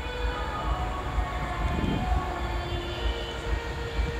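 Background music under the sermon: soft sustained chords with a low rumble beneath, the chord shifting as new notes enter about halfway through.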